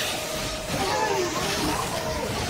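A sampled film sound clip in the mix: voices over a loud, steady rushing noise, with no music playing.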